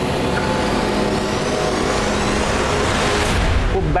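Dramatic sound-design riser in a TV drama score: a dense whooshing swell over a sustained drone that builds and rises in pitch, then cuts off abruptly just before a man's voice.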